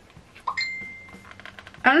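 A single light, bell-like ding about half a second in, a clear high tone that rings on and fades over about a second.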